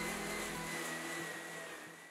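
Electric hand drill spinning a sanding wheel against an embossed copper relief panel, grinding it smooth before gold plating: a steady motor whine with the hiss of the abrasive, fading away toward the end.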